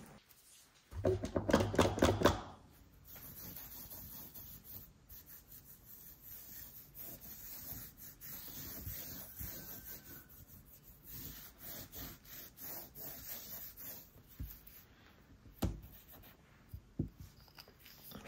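Cotton pad rubbing back and forth over a metal nail-stamping plate, wiping the polish off it, in a long run of faint scrubbing strokes. A couple of light taps follow near the end as the plate is handled.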